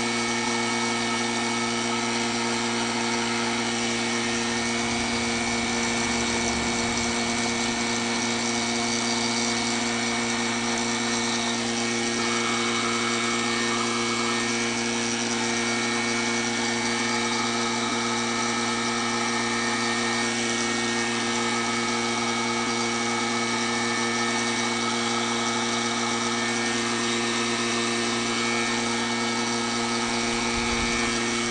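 Vacuum pump of a homemade vacuum-forming rig running steadily, holding the heated plastic sheet drawn down over the mould. It is a constant hum with several fixed tones and no change in level.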